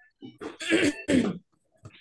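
A person coughing twice in quick succession, the second cough shorter.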